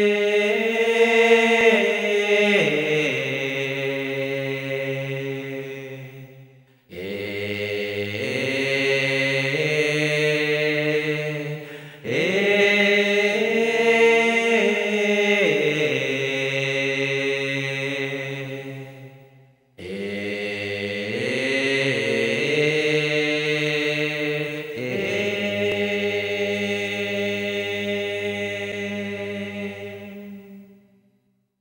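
Chanted vocal music with long held notes and slow pitch glides, in four long phrases that each fade out before the next begins.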